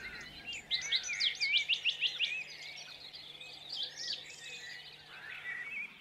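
Songbirds singing and chirping, with a quick run of sweeping notes about a second in, over a faint steady low hum.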